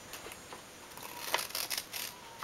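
Scissors snipping a short slit into folded paper, a few quick crisp cuts in the second half.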